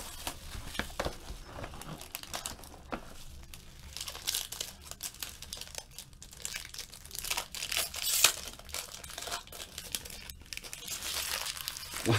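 Clear plastic shrink wrap being torn and peeled off a trading-card box, crinkling in irregular crackles throughout.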